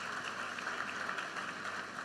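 Faint, steady applause from a large audience, with no one speaking over it.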